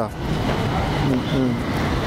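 Road traffic noise: a motor vehicle running close by, an even rushing hiss over a low rumble, with faint snatches of a voice about a second in.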